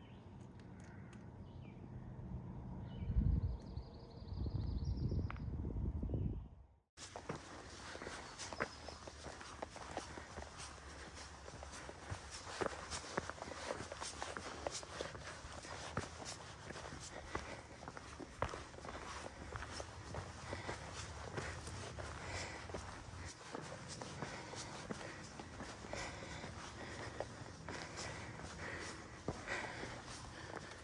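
Footsteps on a rocky, root-covered forest trail, a steady run of crunching steps and taps that starts after a cut about seven seconds in. Before the cut, a low rumble of wind buffeting the microphone comes in gusts.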